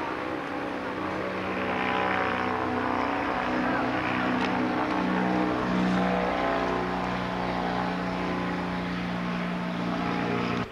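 Goodyear blimp's propeller engines droning as it passes low overhead: a steady, loud engine hum of several tones, growing a little louder toward the middle, where the pitch bends slightly.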